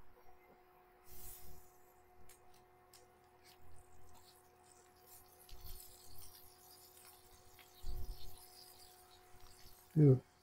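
Butter starting to sizzle faintly in a hot nonstick skillet on an induction cooktop, a high hiss that builds over the second half, over the cooktop's steady hum. A few soft knocks and taps of the butter being unwrapped and handled come before it. The heat is set too high.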